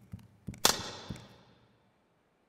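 A few quick knocks like running footsteps on a wooden stage floor. A little over half a second in comes one sharp, loud hit that rings away over about a second.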